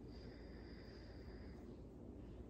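A faint, slow deep breath from a woman, heard as a soft hiss lasting about a second and a half, over a low steady room hum.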